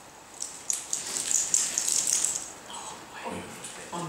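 Liquid poured from a thermos flask, a hissing splash lasting about two seconds. A short murmur of voice follows near the end.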